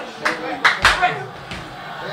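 A quick run of four sharp hand claps and slaps in about the first second, from excited men celebrating, with voices underneath.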